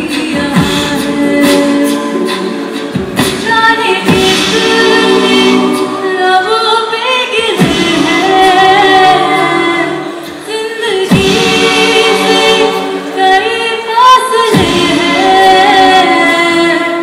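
A cappella group singing through microphones: women's voices carry a gliding melody over sustained backing harmonies, with no instruments. Short, sharp clicks sound during the first three seconds.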